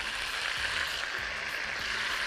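Raw chicken breast cubes sizzling in ghee in a frying pan, a steady hiss.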